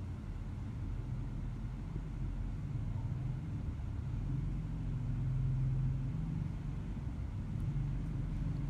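Low, steady engine rumble of a motorcycle moving slowly nearby. It swells to its loudest about two-thirds of the way through, then eases.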